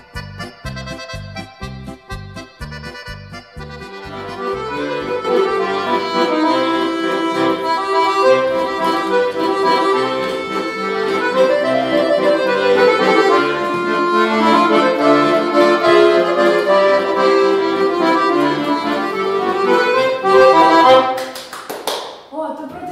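Piano accordion playing a lively tune: about four seconds of short, even bass-and-chord pulses, then a louder, fuller melody over them, ending on a loud final chord near the end.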